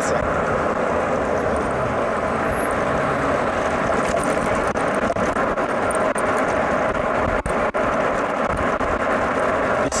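Steady rush of wind and road noise at a handlebar-mounted camera on a Citycoco Skyboard BR30 electric scooter accelerating on a straight to about 50 km/h, with a faint steady whine underneath.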